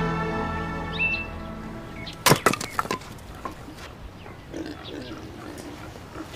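An axe chopping firewood: one loud chop followed quickly by a few sharp cracks as the wood splits apart, while background music fades out.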